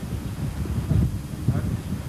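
Wind buffeting a camcorder microphone, an uneven low rumble that rises and falls in gusts, with a brief faint voice about one and a half seconds in.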